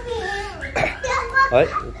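Young children talking and playing, their voices mixing, with a man saying a short word near the end.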